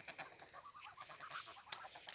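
Domestic geese gabbling faintly: a quick run of short soft notes lasting a little over a second, with a sharp click near the end.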